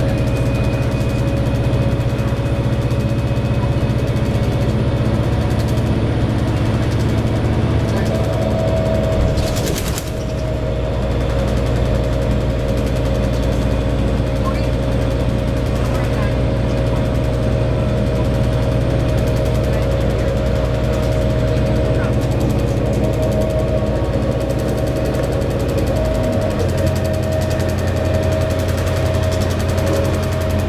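Steady engine and road drone heard from inside a moving bus. The engine note changes about ten seconds in and again near the end, as with a gear change.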